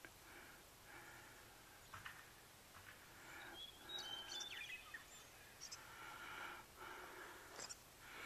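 Near silence: faint outdoor ambience, with a few faint high bird chirps about four seconds in.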